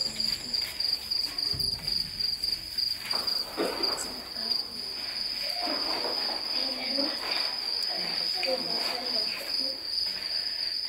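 Crickets chirping in a steady, fast-pulsing high trill, with faint voices in the background.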